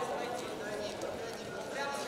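Voices calling out in a sports hall during a wrestling bout, with a few short knocks, such as feet on the mat.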